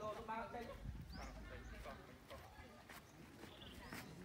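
Faint, indistinct voices of people talking, strongest in the first second, with a few light clicks scattered through.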